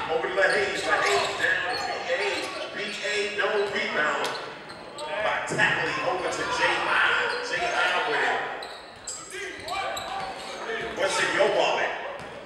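Basketball dribbled on a hardwood gym floor during play, under shouting and chatter from players and spectators in a large, echoing gym.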